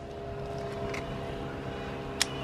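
A motor running steadily nearby: a low drone holding several constant tones, with a faint tick about a second in.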